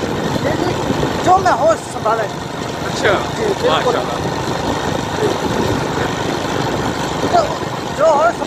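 Motorcycle engine running and wind rushing over the microphone as the bike rides along a road, with short snatches of a man's voice over the top.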